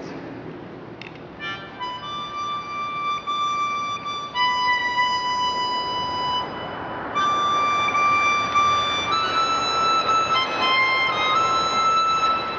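Harmonica played in long held notes and chords, starting about a second and a half in, shifting pitch a few times with a short break about halfway through.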